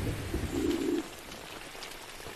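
Rain falling, with one short low cooing call about half a second in.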